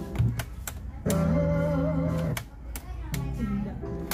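Sony CFS-715S cassette boombox playing music with a voice and guitar from a tape through its speakers, with a few sharp clicks from its transport keys. The playback is clean after the loose, blackened record switch was cleaned and refitted, and the repairer calls it working perfectly.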